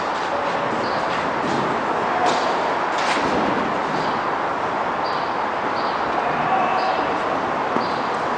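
Tennis ball struck by racket and bouncing on a clay court: two sharp knocks about two and three seconds in, over a steady noisy background.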